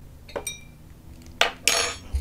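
A glass clinks once and rings briefly, then near the end a plastic zip-top bag gives a sharp crack and a short burst of crinkling as it is squeezed.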